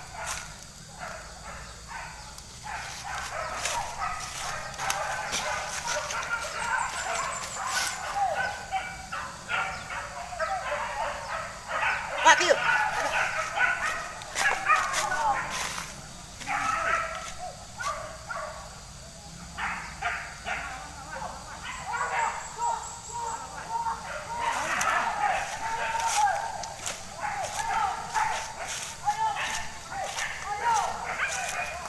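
Pack of hunting dogs barking and yelping, with many short calls overlapping and a louder burst about twelve seconds in.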